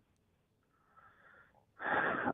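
Breathing heard over a telephone line: a faint breath about a second in, then a louder breath near the end.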